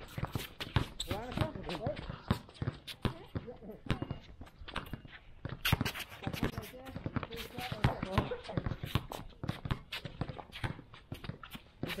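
Several basketballs being dribbled at once, a stream of irregular, overlapping bounces, with voices in the background.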